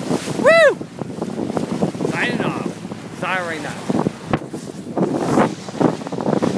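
A man's loud, wordless whoop, rising and falling, about half a second in, then two shorter calls around two and three seconds in, all over steady wind buffeting the microphone on a sailboat under sail.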